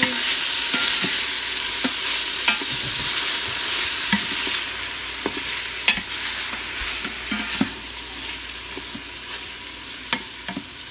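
Sliced smoked sausage, onions, garlic and roasted red peppers sizzling in oil in an Instant Pot's stainless inner pot on sauté mode, stirred with a wooden spoon that clicks against the pot a few times. The sizzle grows quieter toward the end.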